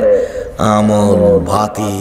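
A male preacher's voice intoning a Bengali sermon in a drawn-out, chant-like delivery into a microphone, with long held notes and a brief break about half a second in.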